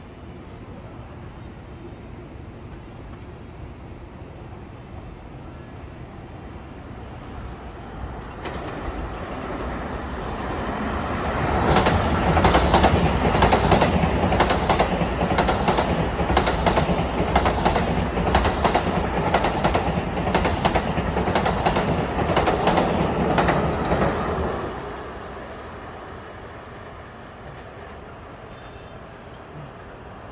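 Long Island Rail Road M7 electric commuter train passing: a rumble that builds over several seconds, is loud for about twelve seconds with a quick run of wheel clicks over the rail joints, then falls away suddenly once the train has gone by.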